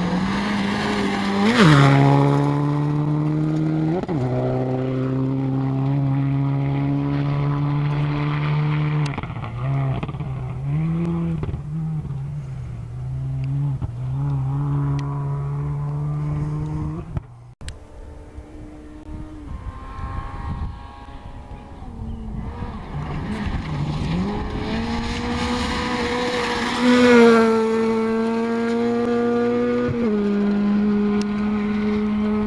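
Rally cars at full throttle on a gravel stage. A Subaru Impreza WRX STI's turbocharged flat-four revs hard past close by and changes gear again and again as it pulls away. After a sudden break about seventeen seconds in, a Ford Fiesta rally car approaches, climbing through the gears and loudest near the end.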